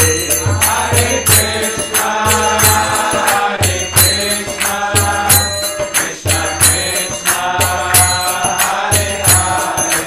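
A man chanting a devotional mantra melody, with small hand cymbals ringing on a steady beat and a low drum pulsing beneath.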